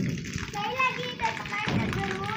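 Young girls' voices, chattering and laughing as they play.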